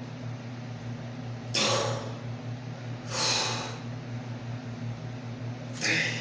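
A man's forceful breaths while pressing a barbell overhead: three hissing exhalations, each about half a second long, roughly every one and a half seconds. Under them runs a steady low hum.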